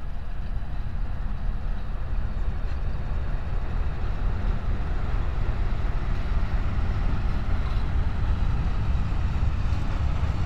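Diesel locomotive hauling a freight train of open wagons passes close by, its engine running under a heavy low rumble that is followed by the wagons rolling along the rails; the sound grows a little louder about halfway through.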